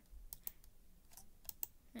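Faint clicks from a computer keyboard and mouse: about half a dozen scattered keystrokes and clicks.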